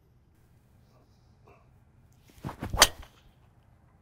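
A PING G430 Max 10K driver swung at full speed and hitting a golf ball off the tee: a brief rising whoosh of the downswing, then one sharp crack at impact, about three-quarters of the way in.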